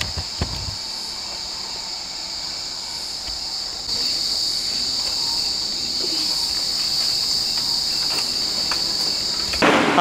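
Steady high-pitched insect drone, which gets louder about four seconds in. There are a few short knocks at the very start.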